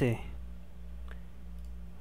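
Steady low electrical hum of a small room, with a single faint click of a computer keyboard key or mouse button about a second in.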